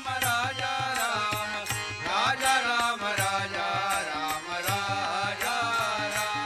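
Group of men singing a devotional song, led by a voice with sliding, ornamented notes, over steady harmonium chords and a tabla keeping a regular beat.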